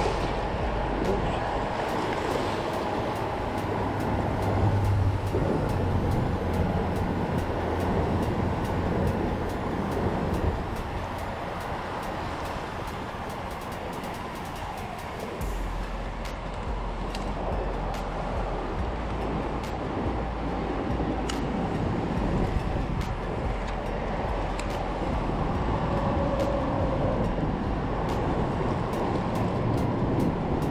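Road traffic passing over the bridge overhead, heard as a continuous rumbling wash that swells and fades, mixed with small waves splashing and lapping against a concrete seawall.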